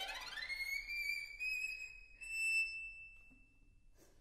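Solo violin sliding steeply up in a glissando to a high note, which is held with vibrato and then fades away.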